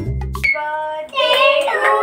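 Chiming background music cuts off suddenly about half a second in; about a second in, children and women start singing together.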